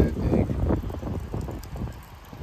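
Low, uneven rumble of wind buffeting the microphone, fading toward the end.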